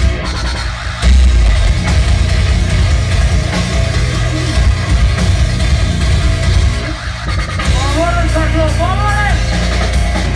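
Live rock band playing loud and heavy: electric guitars, bass and drum kit. The music drops back briefly about a second in and again about seven seconds in, and a pitched line bends up and down near the end.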